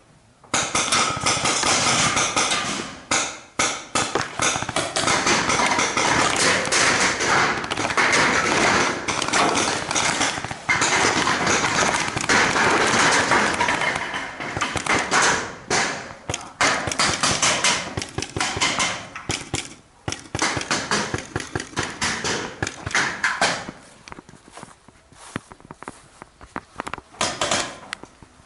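Dense, loud rubbing and knocking noise on a carried camera's microphone as it is jostled and handled, thinning out near the end.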